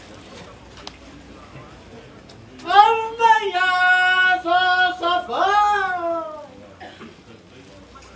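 A single loud, high voice gives a long drawn-out call, like a chanted shout. It starts a few seconds in and lasts about four seconds: held on one pitch, then stepping down to a lower held note, then a last call that rises and falls away.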